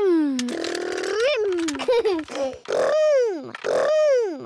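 Cartoon children's voices imitating toy vehicle engines, with a buzzing 'brrm' about half a second in, then high vocal sounds that glide up and down in pitch, and giggles.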